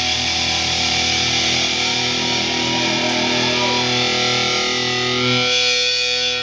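Loud live rock band playing: heavily distorted electric guitar and bass hold long, sustained chords that ring on, over a dense wash of noise.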